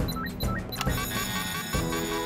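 Cartoon background music with a quick repeated beeping figure, then an electric fire-station alarm bell starts ringing steadily about a second in, under the music.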